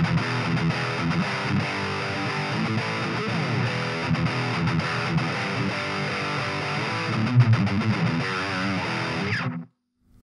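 High-gain distorted electric guitar played through a Fender Champion 20 practice amp set to its Super-Sonic 'metal red' voice: a heavy metal riff that stops abruptly just before the end.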